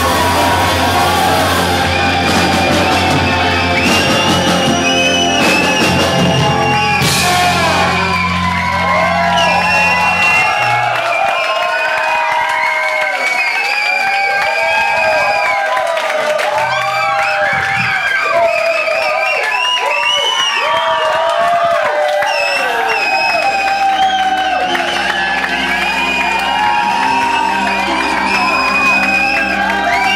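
A live band with saxophone, electric guitar and drums playing the end of a rock number. About ten seconds in, the bass drops away and the audience's shouts and whoops mix with the band's closing sound.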